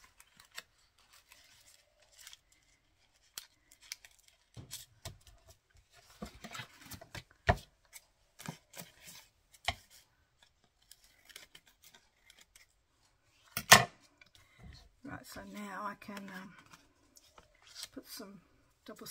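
Scissors snipping through card and a paper doily, with scattered light clicks and rustles of paper being handled. About three-quarters of the way through comes one loud sharp clack.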